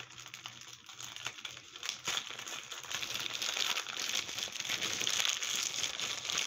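Packaging crinkling and rustling as it is handled, getting louder from about two seconds in.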